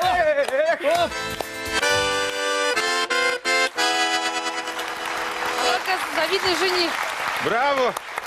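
A bayan, a Russian button accordion, plays the closing chords of a song: sung voices for about the first second, then held chords with a few short clipped ones. Applause starts about six seconds in.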